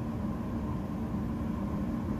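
Motor yacht's engines running, a steady low rumble with a faint constant hum.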